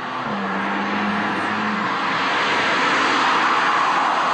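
BMW Z4 sDrive35i driving by, its twin-turbo three-litre straight-six holding a steady note for the first couple of seconds. Road and wind noise grow steadily louder as the car approaches.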